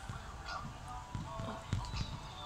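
Faint bird calls and chirps, over a low rumble with a few soft knocks.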